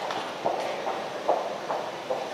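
Footsteps on a hard concrete floor, soft thuds about two to three a second, over the hum of a large indoor hall.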